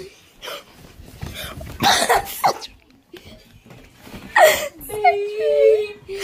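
A young person's voice making unclear vocal sounds in short bursts, then a long held, wavering vocal note near the end.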